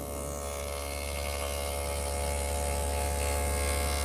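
Table saw with a dado cutter head running, a steady motor hum with a faint whine.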